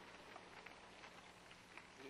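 Near silence: a faint steady low hum with a few soft, scattered ticks.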